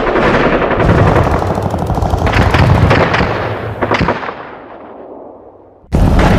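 Heavy gunfire, a dense machine-gun-like barrage with some sharper single shots standing out, that fades away over the last two seconds.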